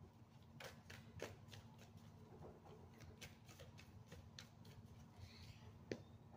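A deck of tarot cards being shuffled by hand: a faint, uneven run of quick papery clicks, with a sharper snap near the end.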